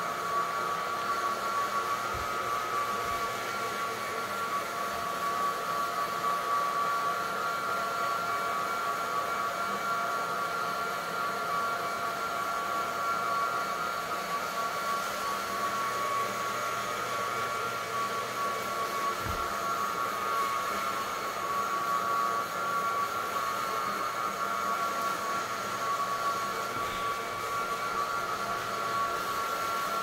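Single-disc rotary floor buffer running steadily over a hardwood floor, a steady whine over a motor hum. Its pad is scrubbing and abrading the old finish to prepare the floor for a new coat.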